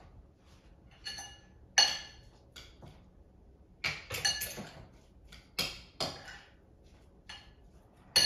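A metal fork clinking against a glass mixing bowl while mashed egg and avocado are stirred: a scattered series of sharp, ringing clinks, the loudest about two seconds in.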